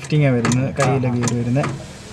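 Only speech: a man talking, trailing off near the end.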